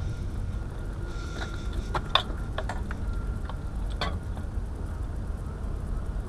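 A few sharp clicks and knocks, the loudest about two seconds in and another near four seconds, over a steady low rumble.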